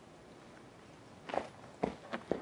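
Two scuffing footsteps about half a second apart, starting a little over a second in.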